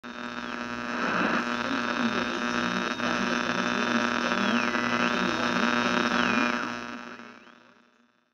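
A steady electronic humming buzz, with a high whine above it that slides down in pitch and back up a few times, fading away over the last second or so.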